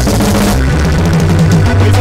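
Live norteño band playing a cumbia without singing: drum kit and bass carry a steady beat under strummed guitar.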